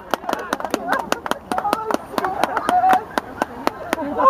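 Hands clapping, a quick uneven run of sharp claps, with voices calling out over them: spectators applauding a goal.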